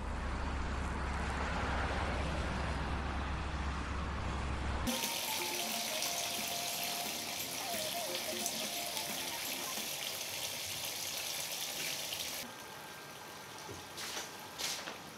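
A steady deep hum for about five seconds, then a sudden cut to water running from a wall tap in a small tiled room. The water is an even hiss that drops in level about two seconds before the end.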